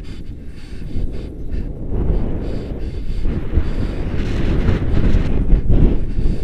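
Wind buffeting the microphone of a camera carried on a paraglider in flight: a dense low rumble that grows louder about two seconds in.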